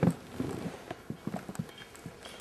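A man licking and sucking blood off his fingers, a string of irregular wet smacks and slurps from his mouth.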